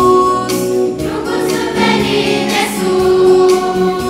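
Children's choir singing a Romanian Christmas carol, holding sustained notes.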